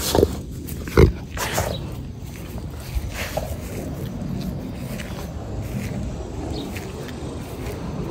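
A Rottweiler sniffing with its nose down in soil and bird seed: a few short, sharp puffs of breath in the first two seconds, the loudest about a second in, then fainter sniffing and rustling.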